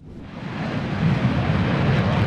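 Jet engine noise from Saab JAS 39 Gripen fighters taking off: a deep, steady rushing rumble that swells in over about the first second, then holds.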